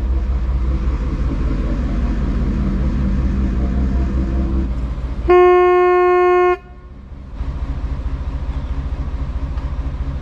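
A boat engine runs with a steady low throb, and about five seconds in a horn gives one loud, steady blast of a little over a second. After the blast the engine sound briefly drops out, then carries on.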